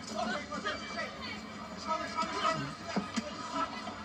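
Mostly speech: a boxing commentator's voice from a television broadcast, played through the TV's speaker and picked up off the room.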